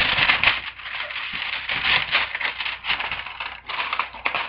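Paper rustling and crinkling as a torn envelope and its papers are handled and opened: a dense run of small crackles without a break.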